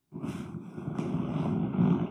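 Heavy canvas and webbing straps rubbing and sliding as a rolled-up swag is cinched through its D rings: a continuous rough rustle that grows louder toward the end.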